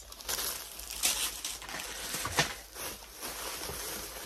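Plastic packaging crinkling as it is handled, with a couple of sharper crackles.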